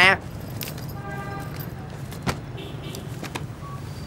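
Street ambience with a steady low traffic rumble, a faint held tone about a second in, and a single sharp click a little after two seconds.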